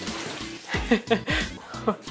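A heavy pour of water splashing down into a planted terrarium, dying away within the first second, followed by short bursts of laughter.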